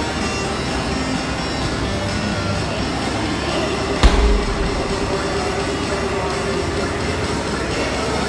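A 14 lb medicine ball dropped onto the gym floor, landing with a single heavy thud about four seconds in, over steady background music.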